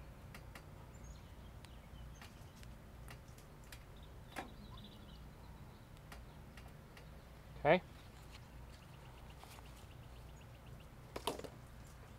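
Faint scraping and soft clicks of bare hands digging and pressing potting soil in a metal raised bed, over quiet outdoor background. A faint fast ticking run comes a little after the middle, and there are two sharp clicks near the end.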